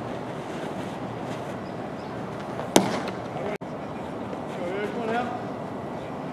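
Baseball pitch smacking into the catcher's mitt: one sharp pop about three seconds in, over a steady background hiss. A short call from a voice follows near the end.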